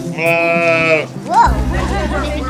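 A sheep bleats once, a wavering call lasting about a second, over soft background music. A brief voice-like call follows.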